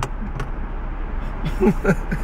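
Steady low rumble of road and engine noise inside a moving car's cabin, with a brief faint murmur of a voice near the end.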